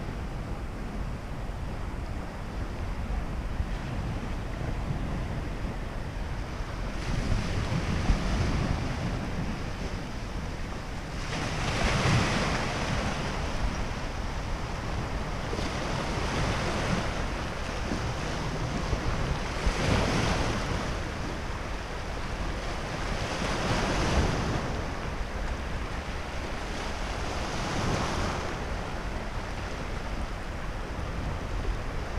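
Sea waves breaking in rushing swells about every four seconds, over a steady rumble of wind on the microphone.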